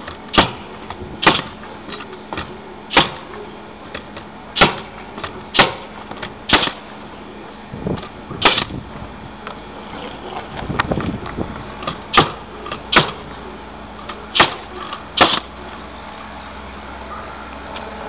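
Pneumatic nail gun firing nails through 5/8-inch OSB roof decking: about a dozen sharp shots, roughly one a second, each with a short ring. They stop a few seconds before the end.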